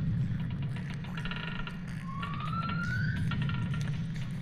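Designed alien-forest soundscape: a steady low rumble under scattered clicks and ticks, with a single rising whistling tone about two seconds in that lasts about a second.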